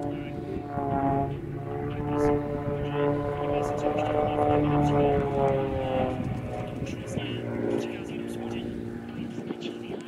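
Aerobatic monoplane's piston engine and propeller droning in flight, its note climbing over the first few seconds and then sinking again through the second half as power and speed change in the figure.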